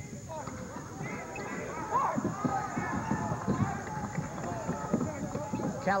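Live court sound from a basketball game: a ball dribbled on a hardwood floor, with players' running footsteps and short sneaker squeaks, and voices from players and crowd in the arena.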